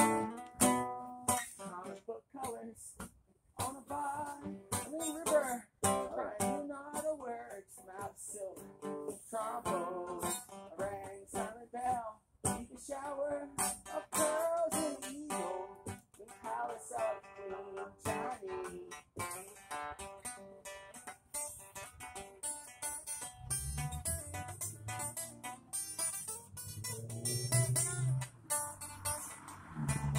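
Acoustic guitar being strummed and played continuously, with a low rumble joining underneath in the last several seconds.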